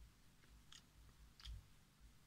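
Near silence with a few faint wet mouth clicks and lip smacks from a person tasting a cola drink, the clearest about a second and a half in.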